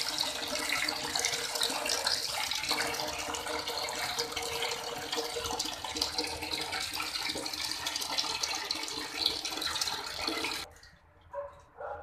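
Water running steadily from the outlet valve of a wood-fired water boiler, then cut off suddenly near the end.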